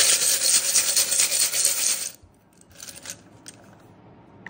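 A glass bowl of small tiles and paper slips is shaken, with a loud, dense rattle for about two seconds. A few fainter rattles follow as a slip is picked out.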